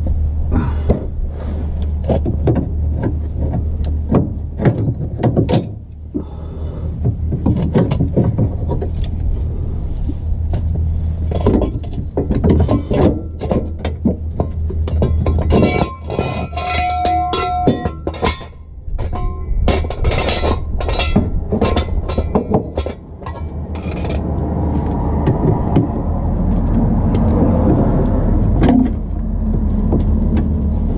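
Irregular clicks, knocks and clatter of hand tools and metal parts being handled under a car, over a steady low hum. A short pitched squeak sounds about halfway through.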